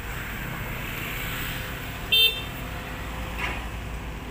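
A single short vehicle horn toot, high-pitched, a little after two seconds in, over a steady low engine and traffic rumble.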